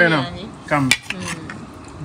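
A metal spoon scooping rice on a plate, with one sharp clink of spoon on plate about halfway through and a few lighter taps after it.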